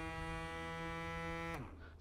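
Electric motor of a Quickcoys motion spreader decoy spinning its metal propeller in the open air, a steady hum that winds down and stops about a second and a half in as the unit's timer ends its run cycle.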